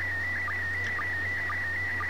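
Slow-scan TV (SSTV) image signal in PD120 mode, a little warbly: a steady tone near 2 kHz broken by a short, lower sync blip about twice a second, each blip marking the start of a new pair of picture lines.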